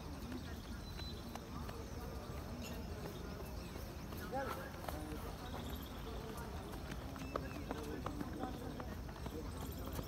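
Footfalls of a large group of runners on a synthetic running track, a scattered patter of steps, with indistinct voices in the background.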